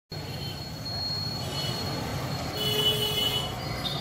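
Street traffic noise from passing motorcycles and scooters, with a thin high whine and a brief louder high-pitched squeal a little after the middle.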